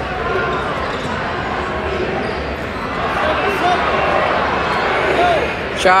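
Arena crowd din at a basketball game, with a basketball being dribbled on the hardwood court and scattered voices from the stands. The crowd noise grows louder about halfway through, and right at the end a spectator shouts "Shot."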